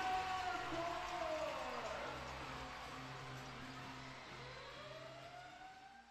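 Produced outro sound effect: a steady low drone with tones that glide downward, then sweep back up near the end, fading out gradually.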